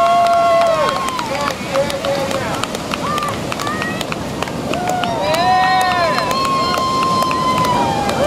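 People cheering and whooping in long drawn-out calls, several voices overlapping, over a steady wash of surf and wind.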